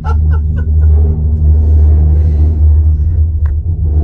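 Steady loud low rumble and hum inside a ropeway gondola cabin as it runs along the cable, with a sharp click about three and a half seconds in.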